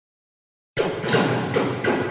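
Intro logo sting: a sudden series of about four hits, roughly a third of a second apart, starting under a second in and ringing on into a fading tail.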